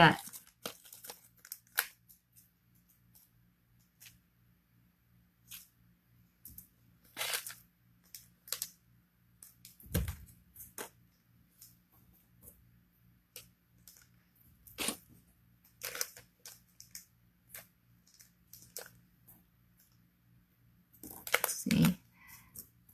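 Plastic bag being handled off to one side: scattered bursts of crinkling and rustling with small clicks and long quiet gaps, over a faint steady low hum.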